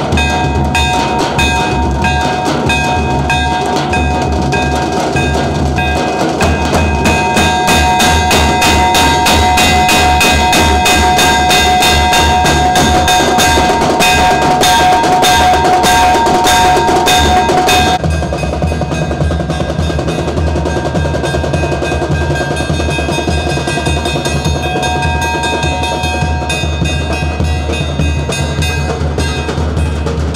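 Large marching bass drums beaten with sticks in a fast, dense rhythm, with a steady high held note sounding over the drumming. About two-thirds of the way through, the whole sound drops somewhat in level, and the drumming carries on more softly.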